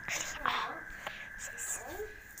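Soft whispering close to the microphone, in short faint bits, over a thin steady high-pitched tone.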